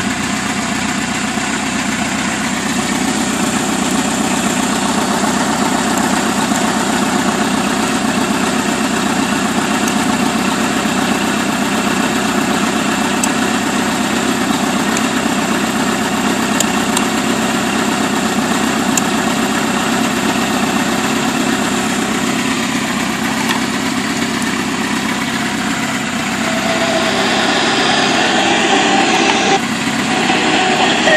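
1996 Kawasaki Voyager 1200's inline-four engine idling steadily at about 1,000 rpm. Near the end a brighter, somewhat louder sound comes in over the idle.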